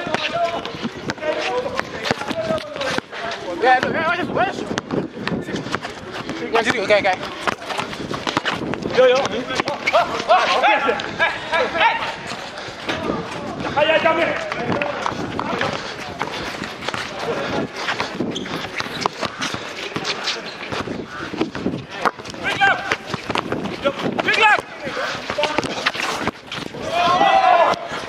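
Outdoor pickup basketball on a concrete court: players' voices shouting and calling to each other through most of it, with a basketball bouncing on the concrete and many short sharp knocks of play.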